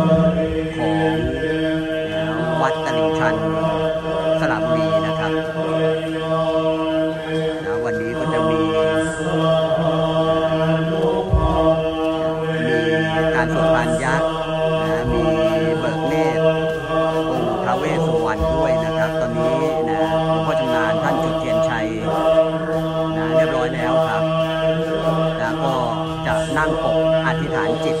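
Buddhist monks chanting together in a steady monotone, the kind of chanting that accompanies an amulet consecration (phutthaphisek) rite.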